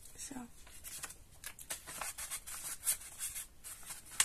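A paper page of a coloring book rustling and crackling as it is lifted and turned over by hand, in a run of irregular crisp strokes.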